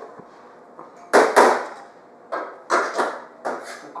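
Knocks and clatter on a stainless steel mixing bowl: two sharp knocks about a second in as a cup of sugar is emptied into it, then a run of clanks as the bowl is set onto the stand mixer.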